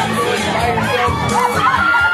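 Women singing into microphones over amplified backing music with a steady beat, while a crowd cheers and shouts.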